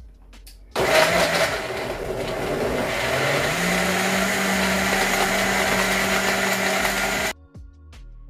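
High-powered commercial countertop blender starting up on a smoothie setting and running loud on a full jar of fruit and spinach. Its motor rises in pitch about three seconds in as the contents turn to liquid, then holds steady and cuts off suddenly near the end.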